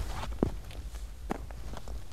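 Footsteps crunching over loose rock and gravel spoil, a handful of uneven steps, with a low steady rumble underneath.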